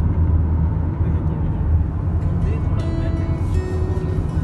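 Steady low road and engine rumble heard inside a moving car's cabin. Music with long held notes comes in a little past halfway.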